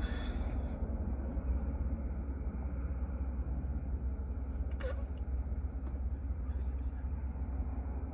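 Steady low rumble inside a car's cabin with the engine running, and a brief click about five seconds in.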